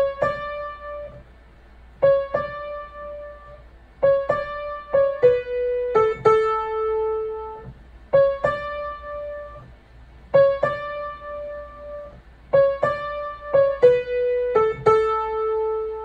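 Upright piano playing the right-hand part of a simple intro: single struck notes that ring and fade, built on C-sharp and D, in short phrases. The same pattern is played twice.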